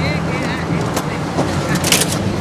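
Steady low hum of an idling vehicle engine, with a few sharp clicks about a second in and near the end.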